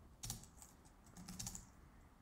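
Faint typing on a computer keyboard: a few separate keystrokes as a short word is typed.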